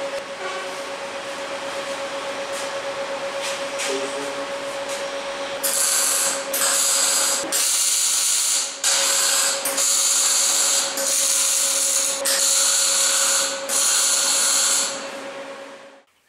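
Steel roof-frame joint being tack-welded: about eight short bursts of welding crackle, each half a second to a second long, after a steady hum and hiss in the first six seconds.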